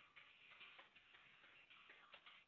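Computer keyboard typing, a rapid run of faint key clicks.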